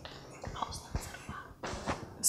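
Hushed whispering, breathy and without voiced pitch, with a few soft knocks of a handheld microphone being handled.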